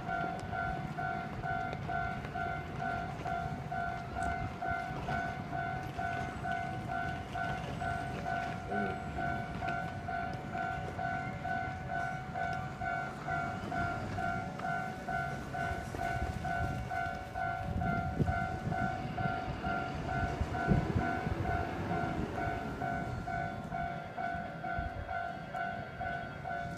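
Japanese level-crossing warning bell ringing steadily, an even, rapid electronic ding repeating without pause. Under it runs the low rumble of an approaching train, which grows loudest a little past the middle.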